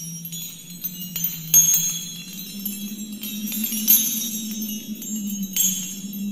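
Title music: a low held note, stepping up in pitch partway through, under high tinkling, sparkling chimes, with sudden brighter shimmering swells about a second and a half in and again near four seconds.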